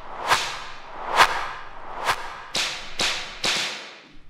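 Breakdown in an electronic dance track: the kick drum drops out, leaving sharp percussion hits with long reverb tails, about a second apart at first and then twice as fast in the second half.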